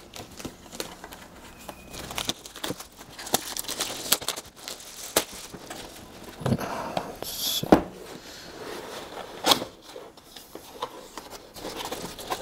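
Thin plastic shrink wrap being peeled and torn off a cardboard box, crinkling, with scattered sharp clicks and snaps of handling.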